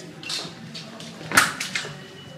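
A sabre fencing exchange: a soft swish early on, then one sharp clack about a second and a half in, from blades or a stamping foot, with a few lighter knocks right after it.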